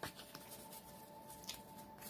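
Tarot cards being handled and shuffled softly: faint papery scratching with a few light ticks, over a faint steady tone.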